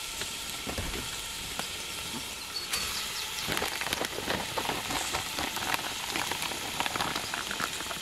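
Onions with frozen celery and leek sizzling in hot olive oil in a pot over a wood fire, a steady hiss with fine crackling that grows busier about three seconds in.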